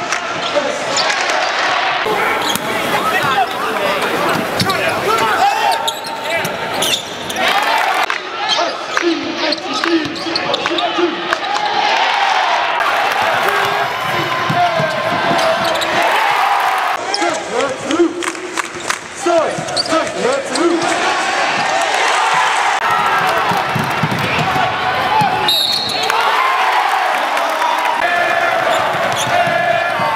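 Live game sound from a basketball court: a ball dribbling on the hardwood floor amid indistinct voices in a large arena, switching abruptly several times as the footage jumps between plays.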